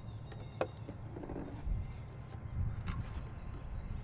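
Wind buffeting the microphone as a steady low rumble, with a few light clicks and knocks from handling things on the table, one about half a second in and another near the three-second mark.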